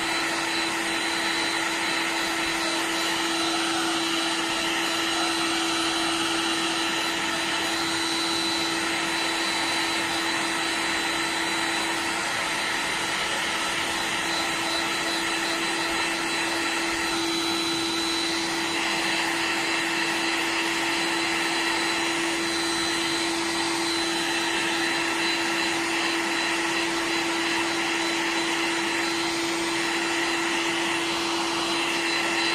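Electric hot air gun running steadily, blowing on a PVC pipe to heat it: an even rush of blown air with a constant hum and a faint high whine.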